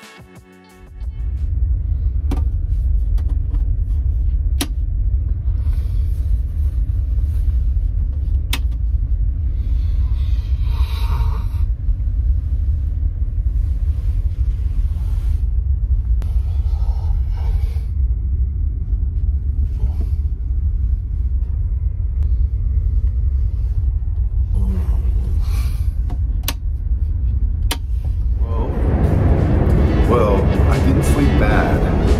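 Steady low rumble of a ferry's engines heard from inside the ship, starting about a second in, with a few sharp clicks over it.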